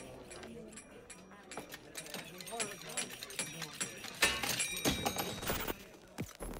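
Faint, muffled voices, followed by a run of clicks and knocks that grows louder about four seconds in.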